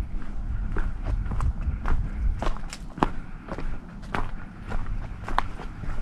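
A hiker's footsteps on a trail: irregular sharp crunches and clicks underfoot over a steady low rumble.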